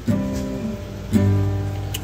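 Background music on acoustic guitar: two chords about a second apart, each left to ring.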